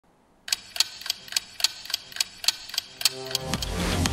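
Clock-like ticking from a TV news opening sting, about three and a half sharp ticks a second, starting after a brief silence. Near the end the ticking gives way to electronic music swelling up.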